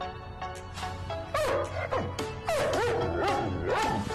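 Music of short melodic notes, with a dog whining and yipping over it from about a second in, its pitch bending up and down.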